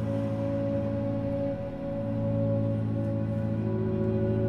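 Contemporary classical chamber-ensemble music: several sustained tones held together in a slow, ringing texture, with the chord changing a little before halfway and swelling slightly afterwards.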